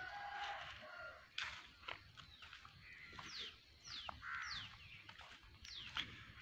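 Faint rooster crowing at the start, followed by a bird giving a run of short, quick calls that each fall in pitch.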